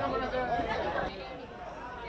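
Indistinct chatter of several people talking over one another, dropping quieter about a second in.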